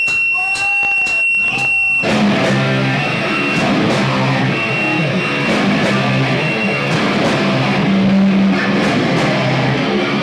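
A live rock band with electric guitars starting a song: a steady high whine and a count-in of four clicks about half a second apart, then guitars, bass and drums come in together about two seconds in and play on loud.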